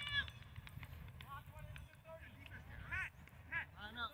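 Distant shouts and calls of flag football players across an open field, coming in short bursts a few times, over a low steady rumble.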